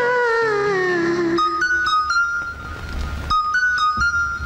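Instrumental interlude of a 1980s Tamil film song. A long gliding lead note wavers and falls in pitch, then gives way about a second and a half in to short, high keyboard notes over a low bass.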